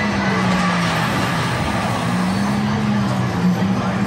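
Dark-ride car running along its track: a steady rumble with a low hum that slowly wavers in pitch.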